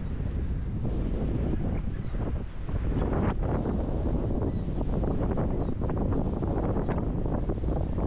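Wind buffeting the microphone in gusts, over the steady rush of the Niagara River rapids and the Horseshoe Falls.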